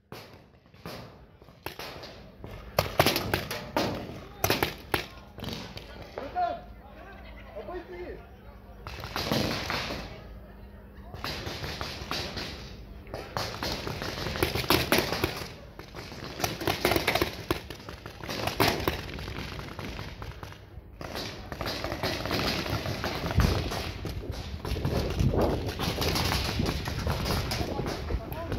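Paintball markers firing: scattered, irregular pops at a distance, over faint shouting voices of players.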